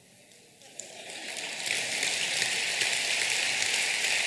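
Large audience applauding, the clapping swelling from about a second in and then holding steady.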